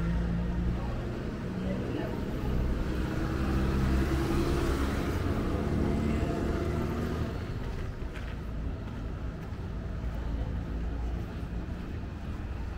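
Roadside traffic: a steady low rumble of engines, with the noise of a passing vehicle swelling to its loudest about four to six seconds in and then fading.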